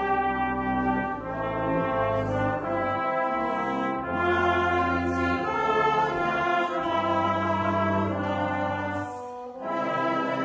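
A brass band playing the slow, chordal introduction to a worship song, held chords changing about once a second.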